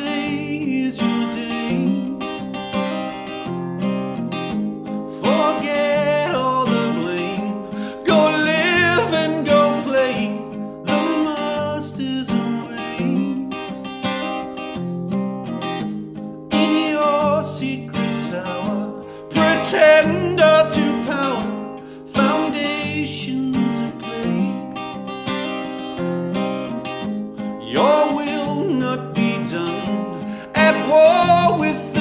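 A man singing a folk song while playing an acoustic guitar.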